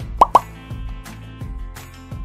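Two short cartoon pop sound effects in quick succession about a quarter second in, as animated icons pop onto the screen, over background music.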